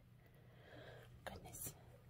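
Near silence, with a few faint, short breathy sounds about a second and a half in.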